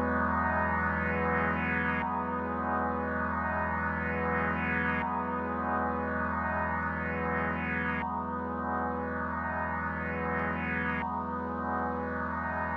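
Ambient synthesizer pad chords played from an Akai MPK mini MIDI keyboard. Each chord is held and gives way to the next about every three seconds over a steady low bass note.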